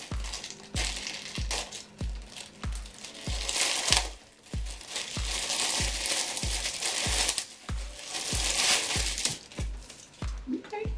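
Clear plastic packaging crinkling as a pair of panties is pulled out of its bag, loudest twice, about a third of the way in and near the end. Under it runs background music with a steady bass beat of about two beats a second.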